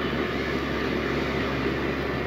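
Steady background hum with a constant rushing noise, with no distinct knocks or clicks.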